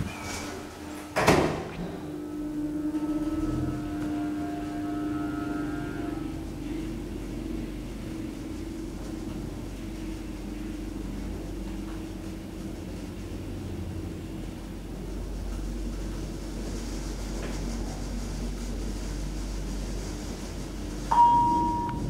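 Asea Graham traction elevator (KONE-modernised) car riding down: a sharp clunk about a second in, then the steady hum of the drive and the car's running rumble, which grows heavier later in the ride. A single short chime tone sounds near the end as the car arrives at the floor.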